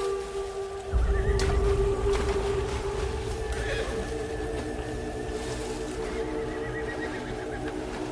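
Indian film background score: held, sustained notes over a deep low swell that comes in about a second in, with a sharp click just after.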